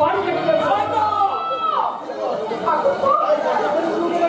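Actors' stage dialogue in Bengali, ringing through a large hall, with one voice sliding sharply down in pitch partway through.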